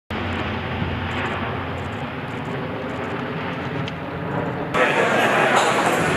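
Steady drone of C-130J four-engine turboprop aircraft overhead, cut off suddenly near the end by the louder chatter of many voices in a large room.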